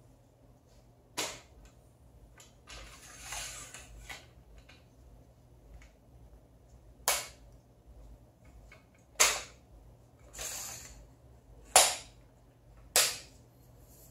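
Aluminium Manfrotto 190 tripod legs being adjusted by hand: five sharp snapping clicks of the leg locks at uneven intervals, with two short sliding scrapes of the leg sections between them.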